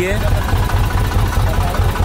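Tractor engine running steadily with a low, even pulse.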